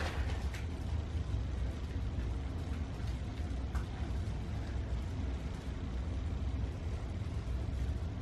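Steady low rumble of room background noise, with a couple of faint soft ticks.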